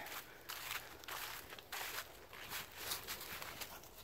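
Footsteps of a person walking at an even pace on a leaf-strewn muddy dirt trail, about one step every half second or so.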